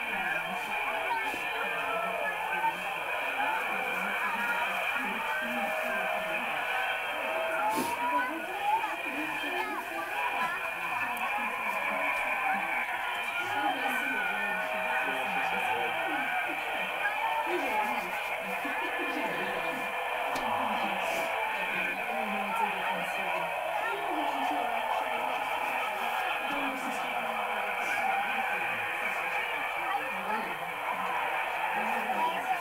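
Indistinct voices played back through a small TV speaker and re-recorded, sounding thin and tinny, with overlapping talk and no words standing out.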